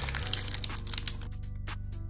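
Foil wrapper of an Upper Deck hockey card pack crinkling and crackling as it is torn open by hand. The crackles come thick in the first second, then scattered, over background music with low held notes.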